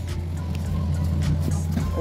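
Road traffic on a busy city street, with music underneath.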